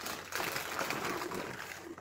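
A hand rummaging in a box of Cinnamon Toast Crunch cereal, the dry pieces rustling and rattling against each other and the packaging, starting about a third of a second in.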